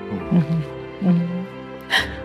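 Soft sad background music under a woman crying. Short low sobs come in the first half second and again about a second in, and a sharp breath follows near the end.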